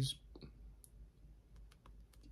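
A few faint, scattered clicks and taps from a paperback book being handled and held up, over a low steady hum of room tone.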